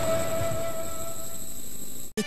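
A held musical tone with a few overtones, ringing on steadily and thinning out near the end: the sustained tail of a TV channel ident jingle.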